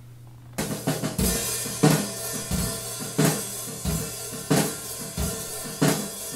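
Playback of a multitrack recording of live acoustic drums: kick, snare and cymbals playing a steady beat that starts abruptly about half a second in. The original live take, which sounds kind of messy.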